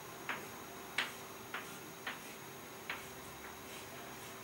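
Chalk tapping and clicking against a chalkboard as a hexagon is drawn line by line: about six short, sharp taps at uneven intervals, one as each stroke starts.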